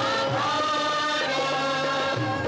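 Devotional background music: a choir chanting long held notes over instrumental accompaniment.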